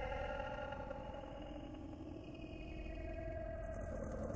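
An engine running steadily, its pitch drifting slightly up and down.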